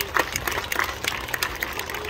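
Scattered applause from a small audience: many separate hand claps overlapping at an uneven pace.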